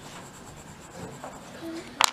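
Pastel stick scratching and rubbing across paper as a drawing is coloured in.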